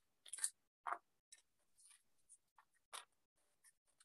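Near silence broken by a few faint, short clicks and rustles, the most distinct about half a second in, about a second in and about three seconds in.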